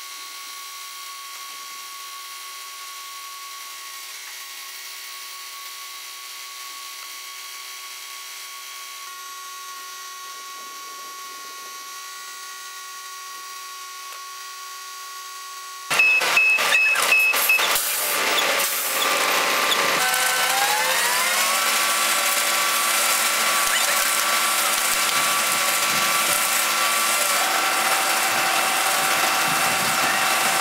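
Truck-mounted concrete boom pump running. First comes a steady, even whine while its boom unfolds. About halfway through, a louder, closer mix of the pump and a concrete mixer truck's diesel engines takes over, with clanks for a few seconds, then the engines speed up and hold a higher steady pitch.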